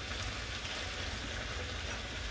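Bacon, diced vegetables and mushrooms sizzling steadily in a frying pan, frying in the fat rendered from the bacon.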